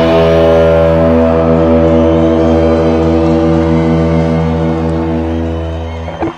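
Live rock band holding the final chord of the song: amplified electric guitars and bass sustain as one steady ringing chord that slowly fades.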